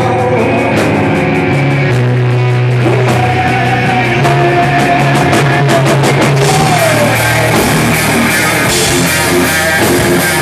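A live rock band playing loud: electric guitar, bass guitar and drums with dense cymbal hits. A long held note runs through the middle, then slides down.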